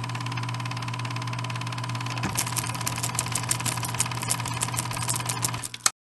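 A small motor running steadily with a low hum and a fast, even clatter that grows a little sharper partway through and cuts off suddenly at the end.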